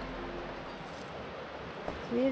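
Steady, even rushing background noise in a forest, with a faint tick near the end.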